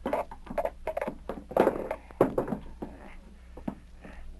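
Sound effect of a nailed floorboard being pried up with an iron bar: a run of sharp knocks and creaking scrapes of wood and nails, loudest about one and a half and two seconds in.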